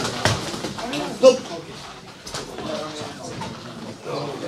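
Boxing sparring: a few sharp smacks of gloves landing, with people talking in the gym. The loudest moment is a short, sharp sound about a second in.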